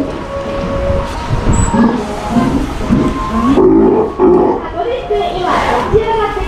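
Young Steller sea lion calling, a run of low throaty calls through the middle and latter part.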